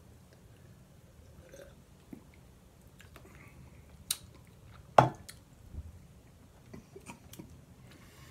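Quiet sips, swallows and mouth clicks of two people drinking carbonated soda (Mountain Dew Pitch Black) from glasses. A few sharp clicks stand out, the loudest about five seconds in.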